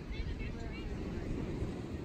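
Steady low rumble of wind and surf on an open beach, with faint, scattered chatter from a crowd of people nearby.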